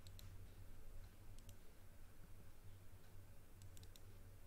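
Faint clicks of a computer mouse and keyboard: one near the start, two about a second and a half in, and a quick cluster near the end, over a low steady hum.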